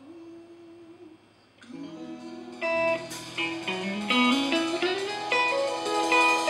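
Electric guitar playing a slow blues line in a live band: quiet at first, then single picked notes that get louder from about three seconds in, over a low held note.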